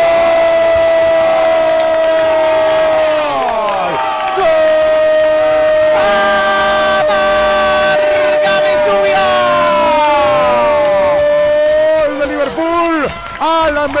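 A radio football commentator's long goal cry, a sustained held "gooool" in two breaths: the first held for about three and a half seconds and falling away, the second, after a brief gap, held for about seven seconds. Other voices rise and fall beneath the second hold before ordinary commentary resumes near the end.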